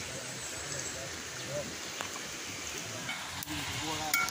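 Steady rushing of a nearby stream, with a couple of faint clicks.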